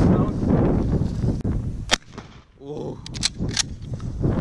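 Gunshots: one sharp crack about halfway through, then a few quick cracks close together near the end.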